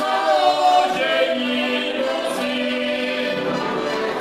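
Heligonkas, Slovak diatonic button accordions, playing a tune together while men's voices sing along, the singing loudest in the first second or so.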